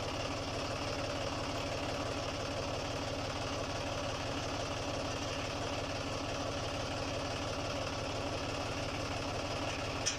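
John Deere tractor's diesel engine idling steadily, with an even, fast pulsing beat.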